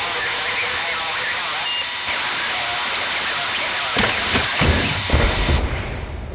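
A noisy sampled break in an industrial electronic track: a dense hissing wash with faint sampled voices under it, then two low booms, about four and five seconds in.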